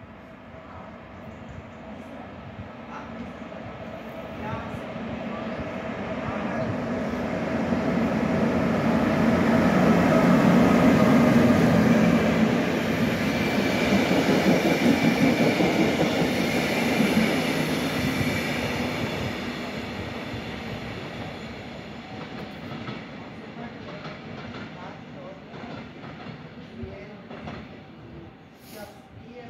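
Passenger train hauled by an HŽ class 1142 thyristor electric locomotive passing at speed: the rumble and wheel clatter swell as it approaches, are loudest for several seconds as it goes by, then fade as it draws away.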